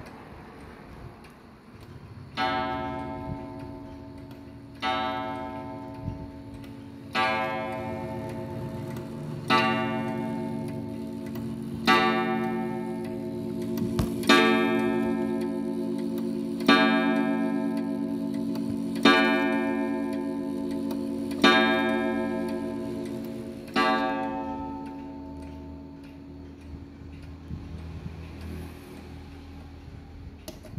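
German mechanical pendulum wall clock striking the hour on a coiled wire gong with a single hammer. There are ten strikes about 2.4 s apart, the first a couple of seconds in, and each rings on into the next. The last dies away over the final few seconds.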